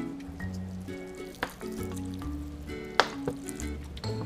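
Water sprinkling softly from a plastic ginger ale bottle with holes punched in its top onto potted plants and soil, like light rain, over background music. Two sharp ticks come about a second and a half and three seconds in.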